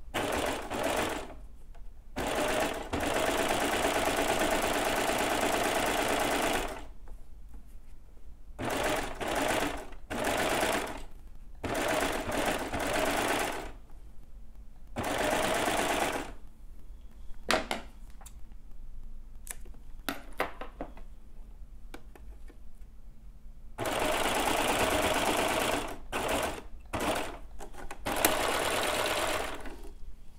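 Baby Lock serger (overlocker) running at speed in stop-start runs as it stitches swimwear elastic onto the edge of stretch fabric: one run of about four to five seconds, then several shorter bursts of a second or two, with quiet pauses between.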